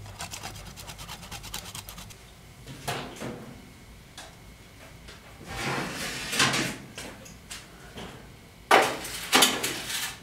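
Kitchen handling sounds. First comes a fast, crackly paper rustle as grated cheese is tipped out of its wrap. Then come knocks and clatters of utensils and dishes being moved and set down on the counter, the loudest pair of knocks near the end.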